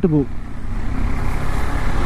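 KTM 390 Adventure's single-cylinder engine running as the bike gathers speed, under a steady rush of wind and road noise.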